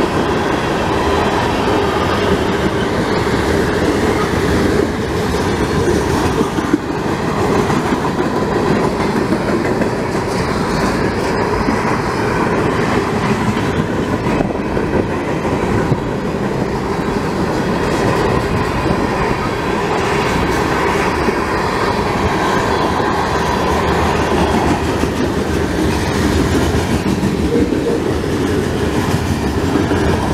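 Freight cars of a passing CSX train (tank cars, boxcars and hoppers) rolling by at close range: a loud, steady rumble of steel wheels on the rails.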